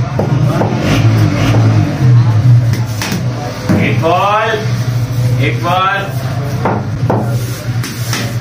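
Two high-pitched shouted calls in the middle, over a steady low hum, with a few sharp knocks scattered through.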